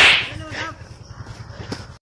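A sudden whip-like swish at the very start that fades within about half a second, as an arm is swung in a throw or strike.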